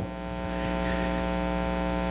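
Steady electrical mains hum in the sound system, a constant buzz made of many evenly spaced tones.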